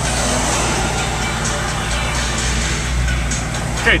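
Dodge Dart GT's engine idling, heard from inside the cabin as a steady low drone.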